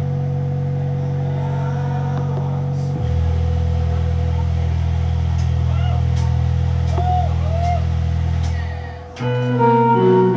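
Live band in a quiet instrumental passage: sustained low chords that shift about three seconds in, a held higher note and a few light taps. The sound dips briefly near the end, then the full band comes back in with denser, many-note playing.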